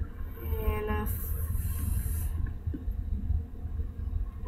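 A short hummed 'mm' from a girl's voice near the start, over a steady low rumble of webcam-microphone noise, with a brief high hiss in the middle.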